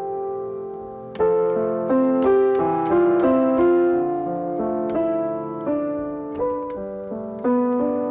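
Piano sound played on an electronic keyboard: an unaccompanied passage of struck chords and single melody notes, a new note or chord every half second or so, each fading as it rings.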